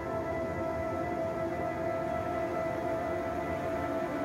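Slow ambient background music of long held notes.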